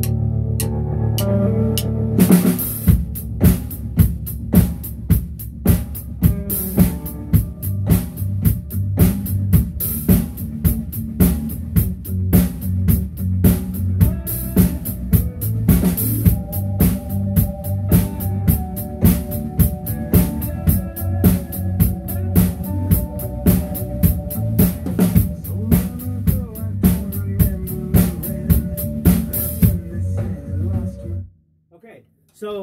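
Acoustic drum kit (snare, bass drum and cymbals) played along with a recorded rock song. The song plays alone at first; about two seconds in the drums come in with a steady beat, loud accents about twice a second.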